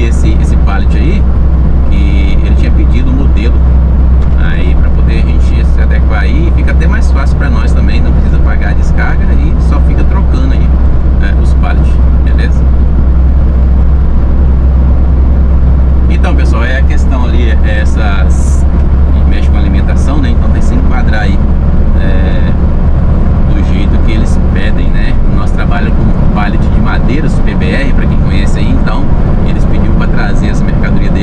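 Cab interior of a Mercedes-Benz Atego 3030 truck under way: a steady, loud diesel engine drone with road noise. The low engine note shifts about three-quarters of the way through.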